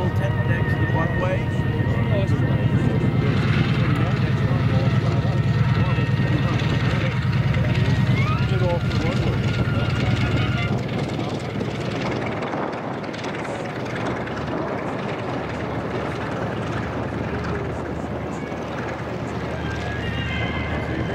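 Bell P-63 Kingcobra's Allison V-12 engine running at low power as the fighter rolls along the runway, a steady drone that drops quieter about ten seconds in.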